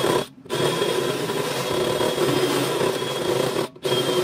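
Power drill cutting a hole through the sheet-steel top of a NEMA 4 electrical enclosure, running steadily with a faint high whine. It stops for a moment twice, just after the start and again near the end, then carries on.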